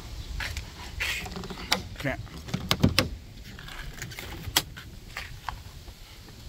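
Sharp clicks and clacks of the powerless 2009 Cadillac CTS's driver door lock and latch being worked by hand and the door pulled open. The loudest clicks come close together about three seconds in, with another near the end.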